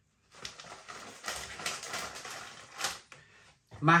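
A plastic snack packet of hot Bombay mix being handled: a run of crinkling and crackling mixed with small clicks for about three seconds.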